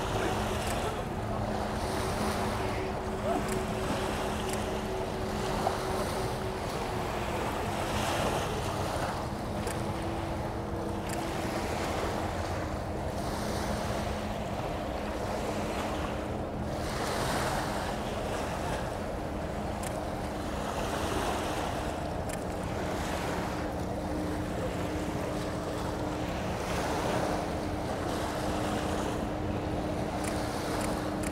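Small river waves washing onto the shore, with wind buffeting the microphone. Under them runs a steady low drone from passing ships' engines.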